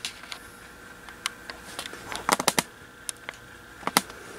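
A run of short, irregular light clicks and taps, with a cluster of heavier knocks about halfway through and another near the end, over a faint steady tone.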